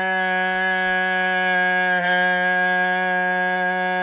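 A man's voice holding one long sung note on a steady low pitch, with a slight catch about two seconds in.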